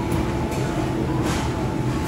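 Steady mechanical hum and rumble of kitchen ventilation fans, with a couple of short hisses.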